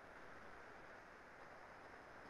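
Near silence: faint steady background hiss of an open microphone on a video call.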